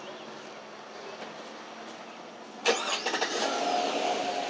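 Faint steady background noise, then a motor starts suddenly about two-thirds of the way in and keeps running with a steady hum.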